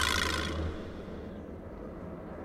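A bright hiss with a low hum beneath it, fading out about half a second in. After it comes faint, steady outdoor background noise, like a quiet street.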